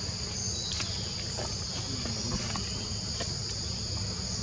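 Steady, high-pitched drone of an insect chorus over a low, even background rumble, with a few faint ticks.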